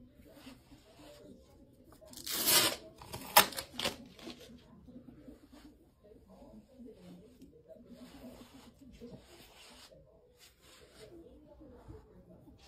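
Sticky lint roller rolled over a rabbit's fur in repeated passes, each a sticky crackling rasp. The loudest pass comes about two seconds in, followed by two sharp snaps.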